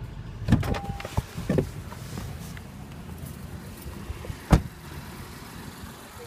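The driver's door of a 2016 Honda Pilot opened, with knocks and a short beep as someone climbs out, then the door shut with a single sharp thud about four and a half seconds in.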